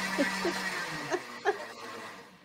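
A countertop blender winding down: its motor hum and whir fade out and stop within the first second, with short bursts of laughter over and after it.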